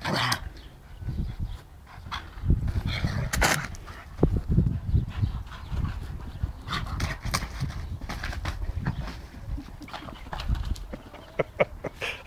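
A large black-and-tan dog making irregular low sounds while playing, with a few short, sharp sounds along the way.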